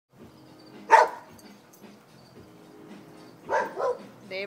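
A boxer barking at a fence: one loud bark about a second in, then two quick barks near the end. The barking is constant, all day long.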